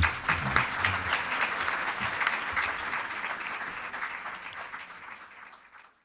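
Audience applauding, a dense patter of many hands clapping that fades out steadily and is gone just before the end.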